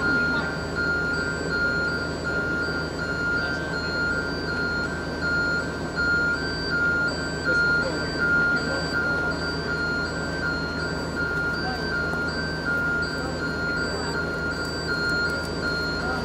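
Aerial ladder fire truck: a high warning beep repeating evenly on and off over the truck's engine running steadily, as the ladder basket is worked at the roof.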